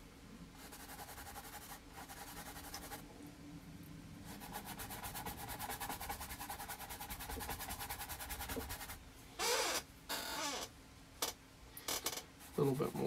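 Paintbrush scrubbing and stroking on a canvas: a faint, quick, even scratching rhythm through the middle, then a few short, louder brush strokes near the end.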